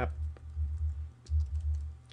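Typing on a computer keyboard: a run of irregular keystrokes with a low rumble underneath.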